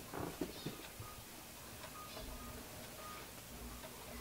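Faint, soft handling sounds of hands pressing paper down onto a painted gel printing plate, a few brief ones in the first second, then low room tone.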